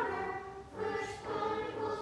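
Group of children's voices reciting a verse aloud together in unison, a chorus-like chant with a brief pause about three quarters of a second in.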